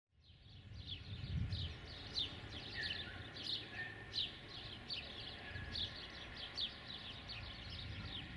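Small birds chirping busily outdoors, many short quick descending chirps two or three a second, with a few short whistled notes among them, over a low background rumble; the sound fades in over the first second.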